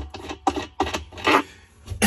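Washing machine agitator nut and its rubber washer being spun off the threaded center shaft by hand. It gives a string of short scratchy clicks and one louder rasp a little past the middle.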